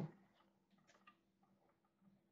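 Near silence, with a few faint ticks of a pen writing on paper.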